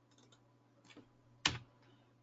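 A few faint clicks at a computer keyboard, with one sharper, louder click about one and a half seconds in.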